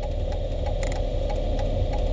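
A car engine idling: a steady low hum with faint, regular ticks.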